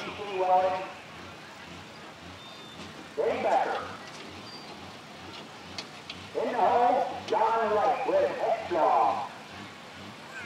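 An announcer talking in several short spells over the steady, low idle of a super stock pulling tractor's engine.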